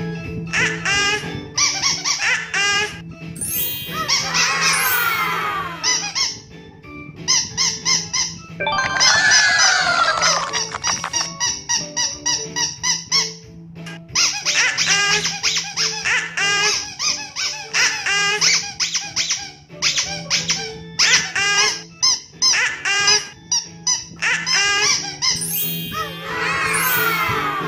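Runs of high-pitched squeaks in quick succession, broken by a few longer falling whistle-like glides, over background music with a steady low tone.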